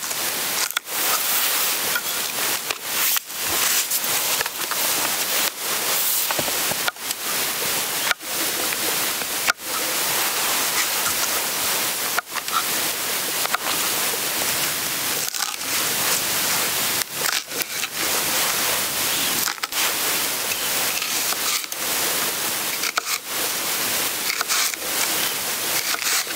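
A kitchen knife cutting napa cabbage and other vegetables on a wooden cutting board: continuous crunching and rustling, broken by many brief pauses.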